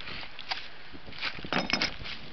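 Footsteps on dry leaves and gravel: a few short scuffs and clicks, bunched together in the second half.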